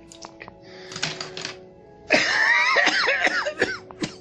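A man coughing and hacking in a loud run of about two seconds, just after drawing on a cigarette, preceded about a second in by a breathy exhale. Sustained background music notes play throughout.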